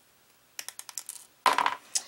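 Small wire cutters snipping jewelry wire and clicking against it: a quick run of light metal clicks, then a louder snip about one and a half seconds in and one more click near the end.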